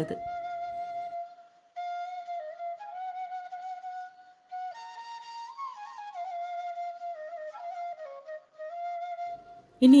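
Background music: a solo flute playing a slow melody of long held notes, pausing briefly twice.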